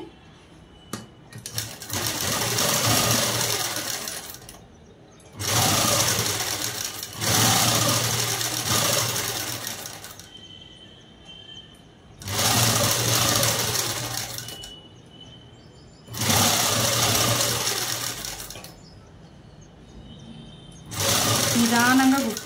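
Ruby domestic sewing machine stitching through light printed fabric in about six runs of two to four seconds each, with short pauses between as the fabric is turned and guided.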